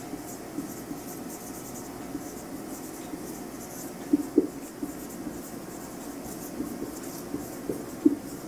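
Whiteboard marker writing on a whiteboard: a faint, steady scratching of the tip across the board. A few short, sharper strokes stand out about four seconds in and again near the end.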